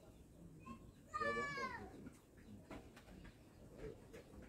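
A single drawn-out animal call a little over a second in, high-pitched and falling in pitch as it ends, over faint background noise.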